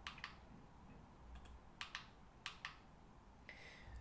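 Faint, scattered clicks at a computer, seven or so, some in quick pairs, over a low steady hum.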